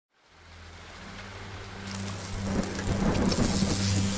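Thunderstorm sound effect, rain and thunder, fading in from silence and growing louder over a low steady drone, with the rain hiss turning brighter about halfway through.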